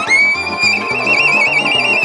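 Violin playing a long high held note with wide vibrato, sliding down near the end, over a steady pulsing low accompaniment.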